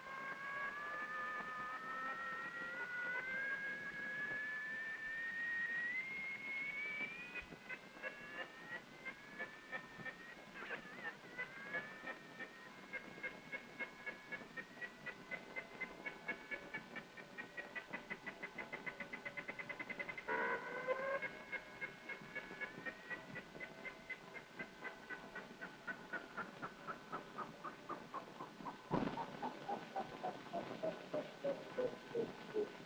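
Electronic sci-fi sound effects: a slowly rising whine with several overtones, then long runs of rapid pulsing beeps that warble up and down and speed up, with a brief chirping burst midway. Near the end there is a sharp click, followed by a falling glide of beeps.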